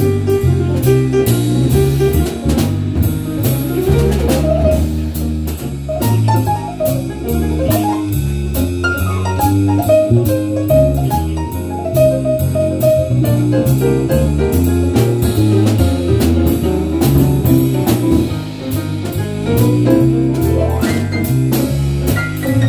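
Live small-combo jazz, an instrumental break in a swing tune: acoustic piano, electric bass guitar and a drum kit with a steady cymbal beat. The upper line runs up and down in quick phrases through the middle of the passage.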